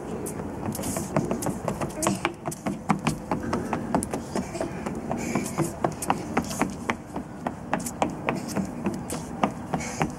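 Children's feet stamping and tapping on deck boards while they dance: a steady run of sharp knocks, about two to three a second.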